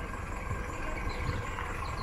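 Steady low engine rumble of an approaching Class 158 diesel multiple unit.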